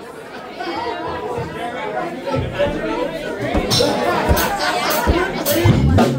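Voices chattering, then a little over two seconds in a rock band's bass and drum kit come in with a few scattered hits as the band starts to play.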